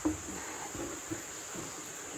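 A large jackfruit being handled into a cardboard box: a knock, then a few faint bumps and rustles, with a steady high insect drone behind.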